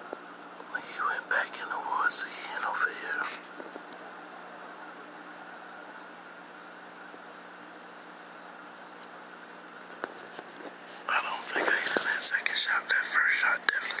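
Whispered talk in two stretches, about a second in and again from about eleven seconds to the end, over a steady high-pitched hum.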